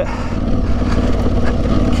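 Aprilia Tuareg 660's parallel-twin engine running steadily under way on a loose gravel track, under a constant low rumble.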